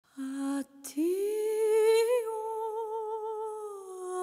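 A woman's voice singing unaccompanied, Sephardic folk song style: a short low note, a brief break, then a long held higher note with vibrato that swells about two seconds in and sinks slightly near the end.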